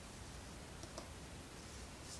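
Two faint computer mouse clicks about a second in, over quiet room tone.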